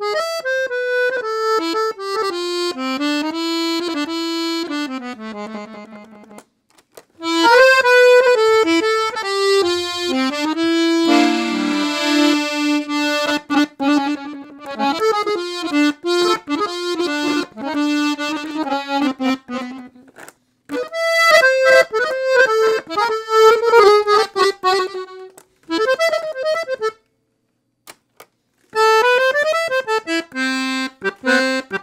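Excelsior Accordiana 320 piano accordion with four treble reed sets (LMMH), played on the treble keys in short melodic phrases. The phrases are split by brief pauses, the longest about two seconds near the end.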